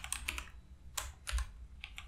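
Computer keyboard keys being typed, a short run of separate, irregular keystroke clicks, the sharpest about halfway through.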